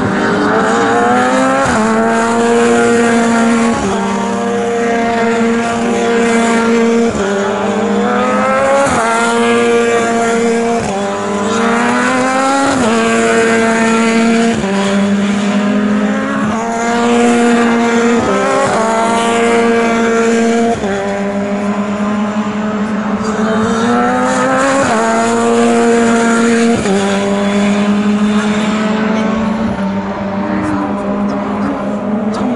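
Formula 3 single-seater racing car engines at full song, the pitch climbing and dropping back again and again as the cars run up through the gears, every couple of seconds.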